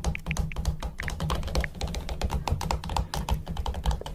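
Rapid, irregular taps and clicks of a phone's on-screen keyboard being typed on, over music with a steady low bass.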